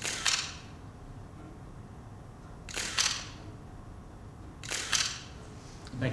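A still camera's shutter firing three times, about two seconds apart, each a short, sharp mechanical click.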